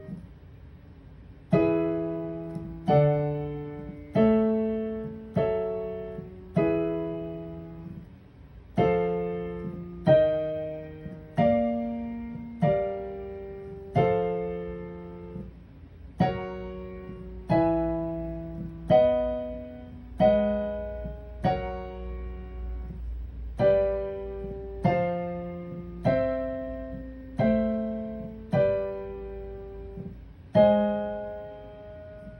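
Digital stage piano on a grand piano sound playing block chords, left-hand root notes under right-hand triads in first inversion, one struck about every second and a bit and each left to ring and fade. The chords step through the I–bVII–IV–ii7–I progression from key to key.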